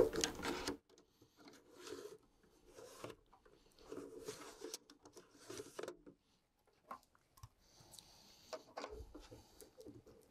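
Drive tray being pushed into a QNAP TS-462 NAS drive bay and the unit's front cover being fitted back on: faint, scattered clicks and scrapes, the loudest in the first second.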